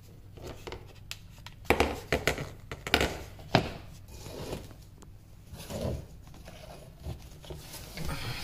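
Painted wooden cabinet-door rails and stiles being pushed together by hand and set down on a wooden floor during a dry fit: scraping and rubbing of wood on wood, with a run of sharp knocks and clicks about two to three and a half seconds in.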